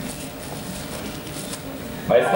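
Quiet concert-hall background noise with faint rustling and small clicks.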